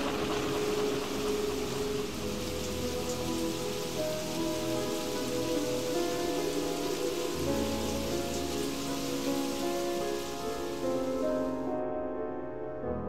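Steady hissing storm sound effect for a blizzard, over slow background music of held notes. The hiss cuts off suddenly near the end while the music goes on.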